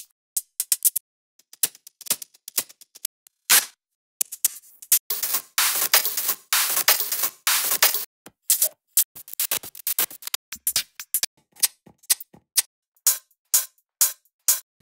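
Electronic hi-hat and percussion loop samples previewed one after another: short high ticks and hisses in changing patterns, with no bass under them. There is a denser run of hits in the middle, and short gaps fall between samples.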